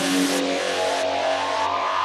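Electronic synthesizer sweep in a goa trance track: a tone gliding steadily upward in pitch over a wash of noise whose brightness falls away in steps, with a steady low drone beneath and no beat.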